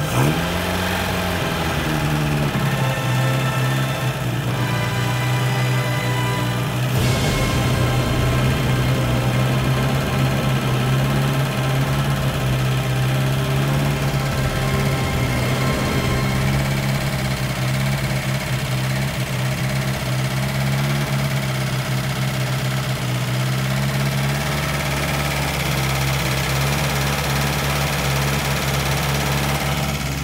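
MG TD MkII's 1250 cc XPAG four-cylinder engine catches on its first start after restoration, revs up for about a second, then runs steadily at a fast idle that has not yet been set down.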